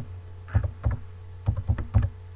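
Typing on a computer keyboard: about six separate keystroke clicks, a pair about half a second in and a quicker run near the end, over a low steady hum.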